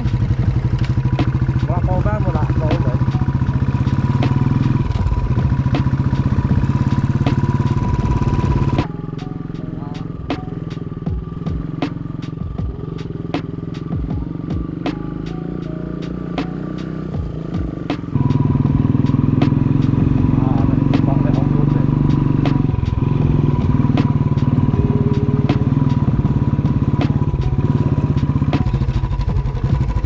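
Royal Enfield motorcycle running as it is ridden along a bumpy dirt track, with many small clicks and knocks. About nine seconds in the sound drops suddenly to a quieter level for about nine seconds, then comes back just as suddenly.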